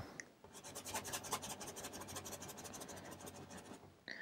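Paintbrush scrubbing oil paint onto canvas: faint, quick back-and-forth strokes, many per second, from about half a second in until just before the end.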